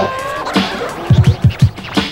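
Hip hop beat with turntable scratching: record scratches glide up and down in pitch over kick drum hits, with a quick run of kicks in the second half.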